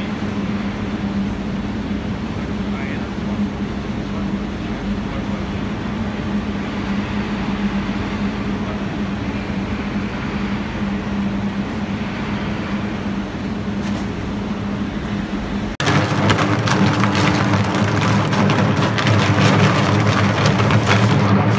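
Electric arc furnace running on UHP graphite electrodes: a loud, steady electrical hum of the arc with a rough crackle. About three-quarters of the way through, the sound cuts to a louder, harsher crackling arc as sparks spray from the furnace door.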